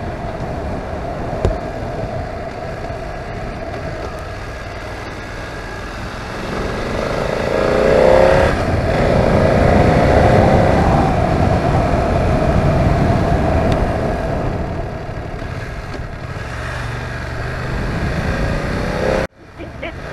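BMW F900R parallel-twin engine running under way with wind and road noise; about seven seconds in it revs up, pauses briefly for a gear change, and runs louder for several seconds before easing off. The sound cuts out briefly near the end.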